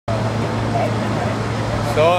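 Outdoor crowd ambience: a steady low hum under an even background noise, with faint voices of people talking in the distance.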